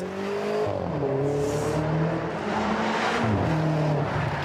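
BMW X6 engine revving hard as the SUV accelerates away. Its pitch climbs, drops back about a second in, climbs again and dips once more near the end.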